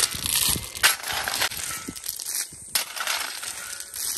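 Steel shovel scraping into a pile of coarse gravel and the stones rattling as they are scooped and thrown, in several strokes with a short lull about two and a half seconds in.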